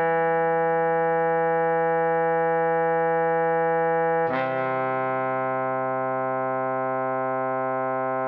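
Trombone playback holding two long whole notes at an even, unwavering level: a D, then about four seconds in a step down to the B below, which is held to the end.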